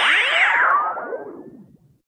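Synthesized closing sound effect: many overlapping pitch sweeps gliding up and down with echo, fading out over the last second.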